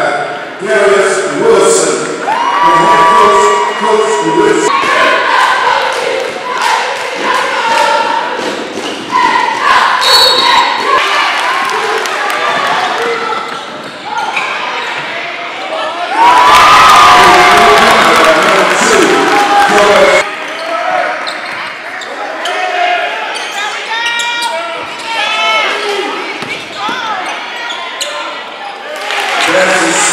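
Basketball dribbling on a gym floor amid crowd voices and shouts. About 16 seconds in, a loud crowd cheer rises, lasts about four seconds, and cuts off suddenly.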